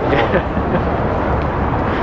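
Steady low rumble of outdoor background noise.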